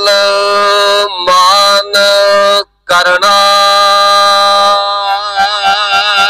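Sikh Gurbani kirtan: a voice holding long drawn-out sung notes over harmonium, broken off briefly about two and a half seconds in. Near the end the notes waver and tabla strokes come in at a few a second.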